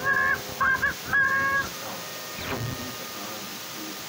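Cartoon character laughing: three short, drawn-out, caw-like "haw" syllables in the first second and a half, then fainter background sound.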